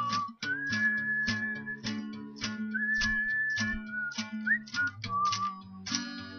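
A person whistling a melody, one clear tone held for about a second per note with a quick upward slide near the end, over a steadily strummed acoustic guitar.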